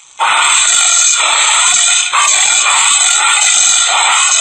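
Recorded anteater call: a loud, continuous, noisy vocalisation with a brief dip near the middle.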